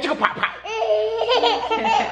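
A toddler laughing, with a woman laughing along.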